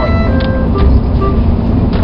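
Steady low road-and-engine rumble inside a moving car's cabin.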